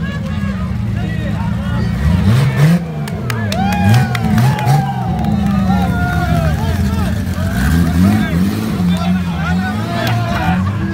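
The 2JZ inline-six in a Nissan 240SX revving up and down in short blips as the car rolls slowly through a crowd, with people shouting over it.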